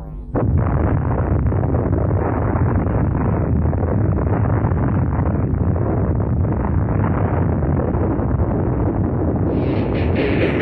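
An explosion-like sound effect in a track's intro: a sudden blast about a third of a second in, then a loud, dull, steady rumbling noise. Near the end the sound turns brighter as the rock track comes in.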